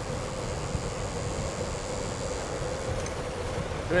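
Steady rush of wind over a clip-on mic and road-bike tyres on tarmac while descending at speed, with a thin high whine that stops about three seconds in.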